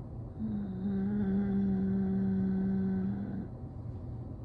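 A woman humming one long, even "hmm" with her mouth closed while she thinks, lasting about three seconds, over a low steady background hum.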